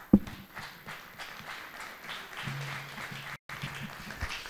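A handheld microphone thumps as it is set down on the table, followed by scattered applause for about three seconds. The sound drops out briefly near the end.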